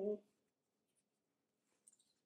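Mostly near silence, with a faint crinkle of coffee-filter paper being pinched and handled, clearest near the end.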